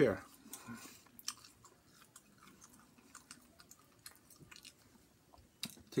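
Faint chewing: soft, scattered mouth clicks and smacks of a person eating pizza, after the end of a spoken word at the very start.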